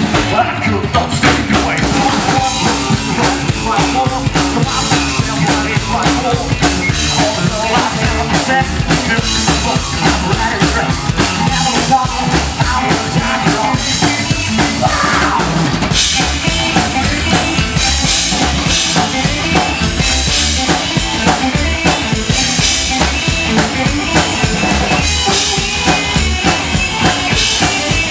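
Live rock band playing loud through a PA: a Tama drum kit drives a steady beat with bass drum and snare, under a hollow-body archtop electric guitar. About halfway through, the cymbals come in stronger.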